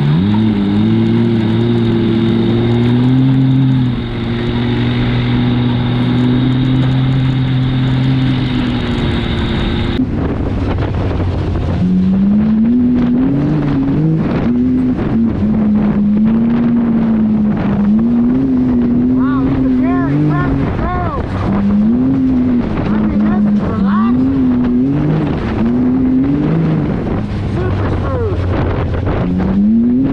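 Side-by-side UTV engine running at a steady speed for about ten seconds. Then the Can-Am Maverick X3 Turbo's turbocharged three-cylinder is heard from the cab, its pitch rising and falling again and again as it accelerates and lets off along the trail.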